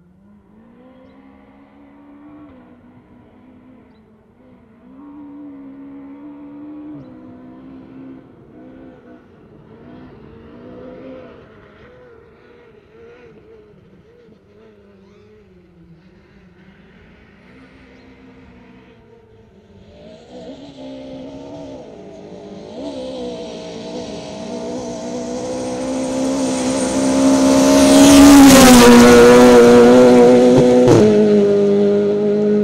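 Peugeot 208 R2 rally car's naturally aspirated four-cylinder engine revving hard through the gears on a gravel stage, faint and distant at first. In the last third it grows steadily louder as the car approaches, then sweeps past close by near the end, its pitch dropping, with a hiss of gravel thrown by the tyres.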